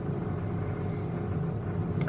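Steady low rumble of a bus going past outside.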